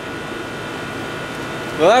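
A running central air conditioner: a steady whoosh of moving air and motor hum, with a faint steady whine. A man's voice begins to speak near the end.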